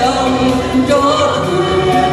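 Karaoke duet: a man and a woman singing together through microphones and a PA, over a recorded backing track.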